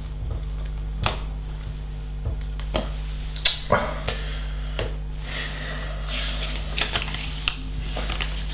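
Small plastic LEGO pieces clicking and clattering as they are sorted from a loose pile and pressed together by hand, a sharp click every second or so. A steady low hum runs underneath.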